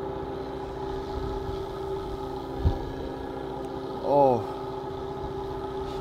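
A fishing boat's engine running with a steady hum. A single knock comes about two and a half seconds in.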